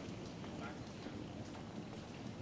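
A wheeled suitcase rolling across a tiled floor, with walking footsteps: a steady low rumble with irregular light clicks.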